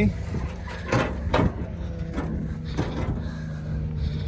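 A vehicle engine idles with a steady low hum, and a few short knocks sound over it.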